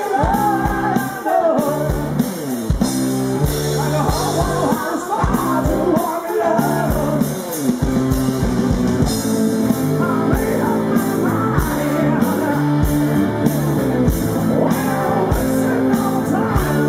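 Live rock band playing through a PA: steady drum beat, electric guitar and a lead vocal.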